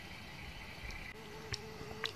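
Faint forest quiet; about halfway through, a small flying insect starts a steady buzzing hum close by, with a couple of tiny ticks over it.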